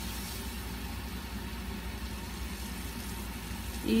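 A steady low hum with a faint even hiss of background noise, unchanging throughout; nothing else stands out.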